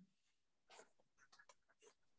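Near silence: room tone, with a few faint, short ticks in the second half.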